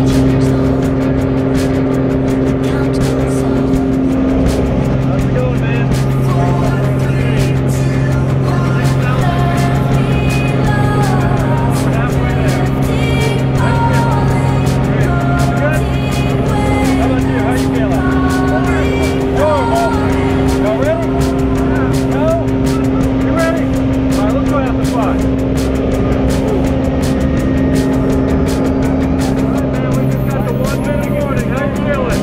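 Single-engine jump plane's engine and propeller running steadily during the climb, heard inside the cabin, under background music.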